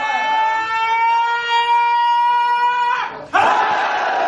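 A single voice holding one long, high cry for about three seconds, its pitch creeping slightly upward, then breaking off; a crowd then bursts into loud shouting for the last part.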